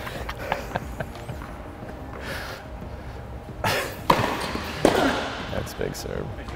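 Tennis ball bounced before a serve, then a short point: a few sharp racket-on-ball hits about four and five seconds in.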